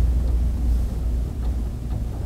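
A steady low rumble of background noise with no distinct clicks or other events.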